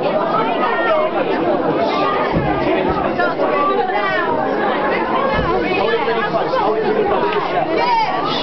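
Many voices talking over one another in a steady, unbroken chatter.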